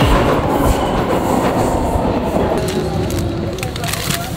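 Vienna U-Bahn train running on the U1 line: a loud, steady rumble of wheels on rails that eases slowly, with a faint whine coming in after about two and a half seconds.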